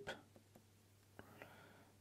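Near silence: room tone, with a single faint click a little past a second in.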